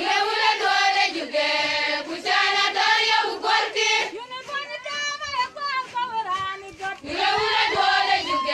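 A group of women singing a song together in high voices. The chorus thins out for a few seconds in the middle, then the full group comes back in near the end.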